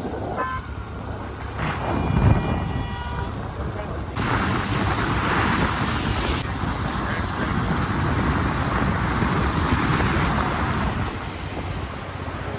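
Royal Enfield Bullet's single-cylinder engine running under way, with wind and wet-road tyre hiss that gets louder about four seconds in. A vehicle horn sounds once, briefly, about two seconds in.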